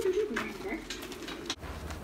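A dove cooing, a low wavering call that stops suddenly about a second and a half in.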